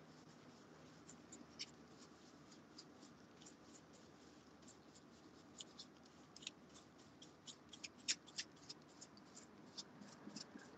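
Faint, irregular scratchy ticks of a dry flat paintbrush sweeping over a resin surface, dusting off loose glitter. The strokes come thicker and louder in the second half, with the sharpest tick about eight seconds in.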